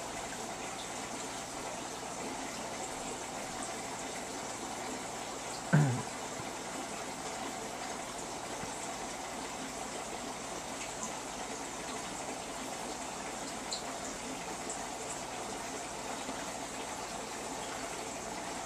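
Steady rush of water from a running aquarium filter and pump circulating the tank water. About six seconds in, one short falling voice sound cuts in.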